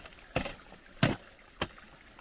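Hammer striking layered rock three times, about two-thirds of a second apart, breaking into it to dig for fossils.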